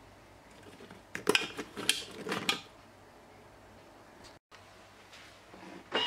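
A few short clattering knocks and clicks, with a little metallic ringing, over about a second and a half: a Vorwerk Thermomix's stainless-steel bowl and lid being handled.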